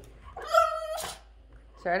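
A French bulldog puppy gives one loud, high-pitched yowl of about half a second, starting about half a second in, as it plays with a cat.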